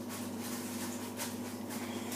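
A steady low electrical hum with a few faint clicks or taps over it.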